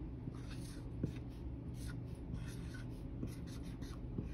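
Dry-erase marker writing letters on a whiteboard, a faint run of short, irregular strokes.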